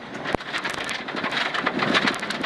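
Rally car at speed on a gravel road: the engine running hard under the noise of the tyres on gravel, with scattered sharp clicks and knocks.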